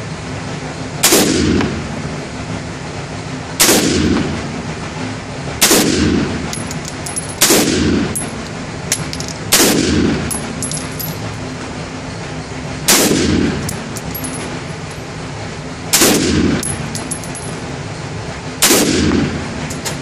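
AR-15 rifle in 5.56 NATO fired as eight single shots at an unhurried pace, two to three seconds apart. Each shot rings out in the reverberant indoor range over a steady background hum.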